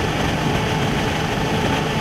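Tractor-drawn grape harvester running, a steady engine and machinery drone with a constant hum, as it unloads grapes into a steel trailer.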